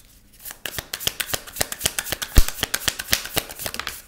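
Deck of tarot cards being shuffled by hand: a rapid run of papery clicks that starts about half a second in and stops abruptly at the end, with one louder knock a little past halfway.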